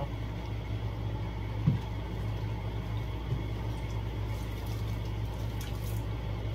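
A large pan of chicken and vegetables steaming and sizzling softly on the stove, over a steady low hum. One short sound about a second and a half in.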